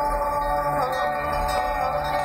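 Live concert music heard from within the audience: several held, ringing notes over a steady low drone, the notes shifting pitch about a second in and again near the end.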